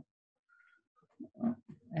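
A second of near silence on a video call, then a few short grunt-like vocal hesitation sounds, a person's hums and murmurs before speaking.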